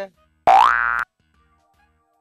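A comedy sound effect: a single tone gliding upward and then holding for about half a second, cut off sharply.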